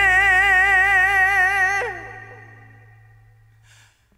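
A male trot singer holding a long final note with a wide vibrato over sustained backing chords. About two seconds in, the voice drops off with a downward slide, and the accompaniment's low chord fades away, the song ending.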